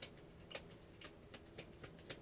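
A deck of cards being shuffled by hand: faint, irregular clicks of card edges, about three a second.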